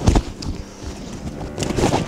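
Wind blowing on the microphone: an uneven, gusty low rush, with a short knock right at the start.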